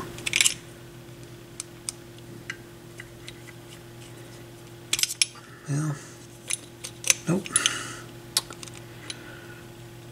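Small metal clicks and ticks of a screwdriver and a small screw being worked into a turntable tonearm's mount, scattered irregularly, over a faint steady hum.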